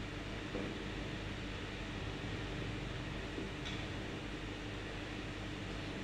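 Steady background hiss and low hum of room tone, with a faint click about three and a half seconds in.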